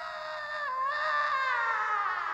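A long, wavering scream held as one unbroken cry, slowly sliding down in pitch.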